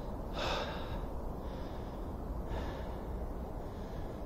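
A man's breathing close to the microphone: a few sharp breaths through the mouth in the cold, over a steady low rumble.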